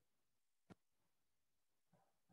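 Near silence broken by a single sharp click a little under a second in: a computer mouse button being clicked.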